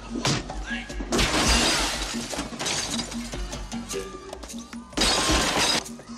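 Glass display cases shattering in a film fight. There is a short crash just after the start, a long crash of breaking glass from about a second in, and another crash about five seconds in. Action-score music with a repeating low note runs underneath.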